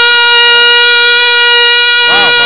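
A naat reciter's voice holding one long, steady high note, with the pitch held flat and no vibrato, in the middle of a sung naat refrain.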